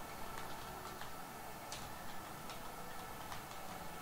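Faint clicks, a little under one a second, over a steady low hiss.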